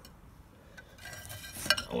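Clay roof tiles being pushed by hand against each other: a faint scraping from about halfway through, then a sharp clink of tile on tile near the end.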